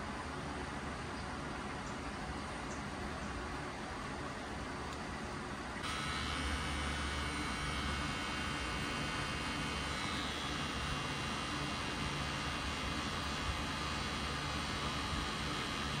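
Cartridge-style rotary tattoo pen running with a steady motor hum while it packs red ink into the skin. It comes in abruptly about six seconds in over a steady background hum.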